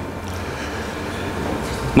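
Steady low rumble and hiss of background room noise, swelling slightly toward the end.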